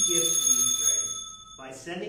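Altar bell struck once and ringing out for nearly two seconds, its high tones fading as it decays. It is rung as the priest extends his hands over the gifts, marking the epiclesis shortly before the consecration.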